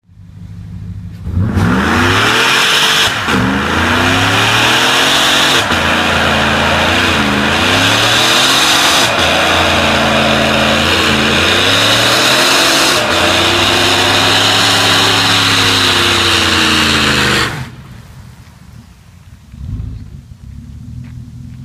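A 2014 GMC Sierra pickup doing a burnout: the engine revs hard, its pitch rising and falling several times, over the hiss of the spinning rear tyres. It lets off suddenly near the end.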